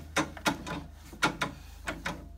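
1877 Singer Model 12 fiddle-base treadle sewing machine running to wind a bobbin, its treadle and mechanism knocking a few times a second at an uneven pace.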